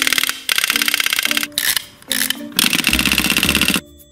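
Wind-up chattering teeth toy clattering as its spring runs down, the plastic jaws snapping shut many times a second in two long runs that stop suddenly near the end, with background music.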